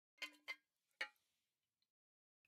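Three short, faint clicks: two close together, then a third about half a second later.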